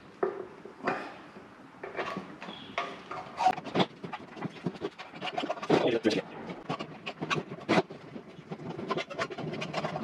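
Lubricated rubber inner tube being stuffed and pushed through the filler hole of a motorcycle fuel tank: irregular rubbing and scraping of rubber on the metal tank, with short knocks and clicks throughout.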